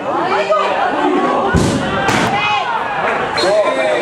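Several voices shouting and calling over one another at an outdoor football match, with a single hard thud about a second and a half in.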